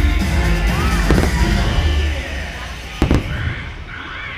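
Fireworks shells bursting over show music: two sharp bangs, about a second in and about three seconds in. The bass-heavy music fades out about halfway through.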